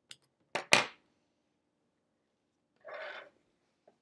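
Small embroidery scissors snipping embroidery floss: two sharp clicks close together about half a second in, the second louder. A brief soft noise follows about three seconds in.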